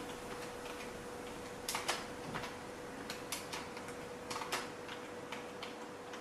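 Keystrokes on a computer keyboard: a short phrase typed as a quick, irregular run of light clicks, starting a little under two seconds in.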